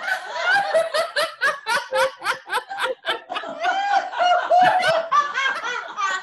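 Several women laughing together in quick rhythmic 'ha ha' bursts, about four to five a second, with longer drawn-out laughs in the second half: deliberate laughter-yoga laughter, heard through a video-call mix.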